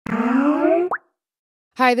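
Electronic intro sound effect for an animated logo: a pitched tone gliding upward for about a second, ending in a quick rising pop, then cutting off.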